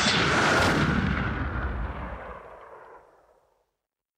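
A booming crash sound effect that dies away over about three seconds, the low rumble fading last, then cuts to dead silence.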